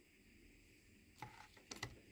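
Near silence: room tone, with a faint click about halfway through and a quick cluster of faint clicks near the end, from glass jars and plant cuttings being handled.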